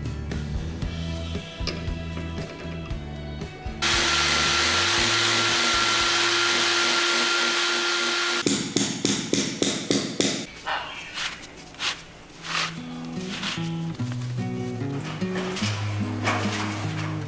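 A corded electric drill runs steadily with a whine for about four and a half seconds as it bores into a wall. Right after it comes a quick run of knocks lasting about two seconds.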